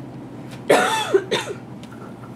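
A person coughing twice near the middle, a longer cough and then a shorter one.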